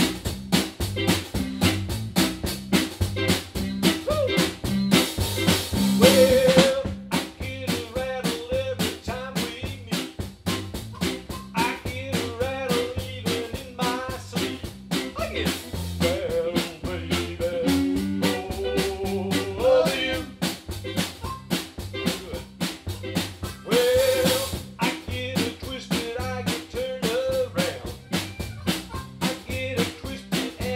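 A band playing a song with a drum kit keeping a fast, steady beat and a pitched lead line over it. A cymbal crash washes over the music twice, once about a fifth of the way in and again near the end.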